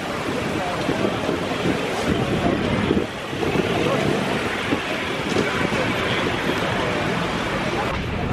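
Steady wind noise on the microphone over indistinct voices of people talking.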